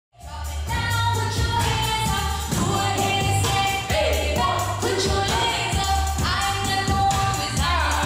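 Pop song with a singing voice held in long notes over a heavy, pulsing bass beat, fading in at the start.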